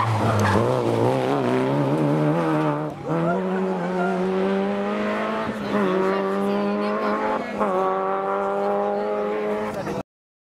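Citroën Saxo rally car's engine, its note wavering on and off the throttle through a corner, then climbing as the car accelerates away, with three brief breaks where it changes gear.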